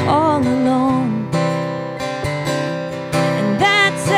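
A woman singing a slow song while strumming an acoustic guitar. A sung line is held through the first second, the guitar chords carry on alone through the middle, and the voice comes back near the end.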